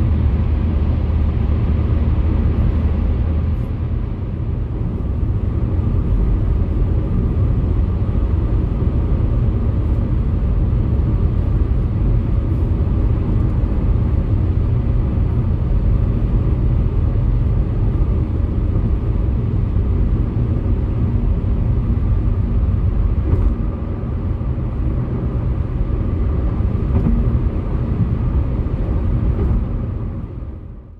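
Car driving at highway speed, heard from inside the cabin: steady tyre and road noise with a low rumble. The deeper boom of the tunnel drops away about four seconds in as the car comes out into the open.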